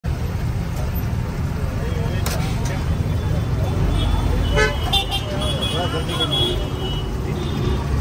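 Busy roadside street ambience: a steady rumble of passing traffic, with vehicle horns tooting several times in the middle and people's voices in the background.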